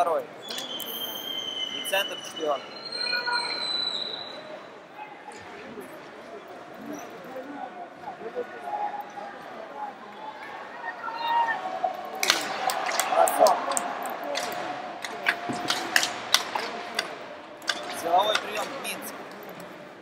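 Ice hockey game sound in an arena: a steady murmur of the crowd over skates and play on the ice. About halfway through, a run of sharp clacks and knocks from sticks, puck and boards grows louder, then eases near the end.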